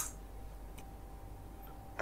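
Computer keyboard clicks while editing text: one sharp click at the start and a faint tick a little under a second in, over a low steady electrical hum.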